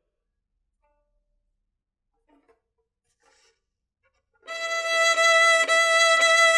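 Violin sounding one held high note, steady in pitch, starting about four and a half seconds in and bowed in short strokes in the last small stretch of the bow near the tip. There is a slight dip about once a second where the bow changes direction.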